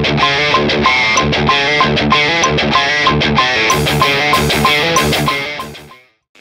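Distorted electric guitar through a Boss Katana 100 MKII amp playing a repeating palm-muted pop-punk breakdown riff as a rhythm-guitar take, over the song's playback. It fades out near the end.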